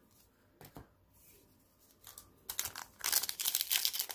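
Plastic wrapper of a trading-card pack being torn open and crinkled by hand, starting about two and a half seconds in after a few faint handling clicks.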